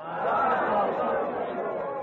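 A group of devotees shouting together in response, 'Jaya! All glories to His Divine Grace!', many voices overlapping at once.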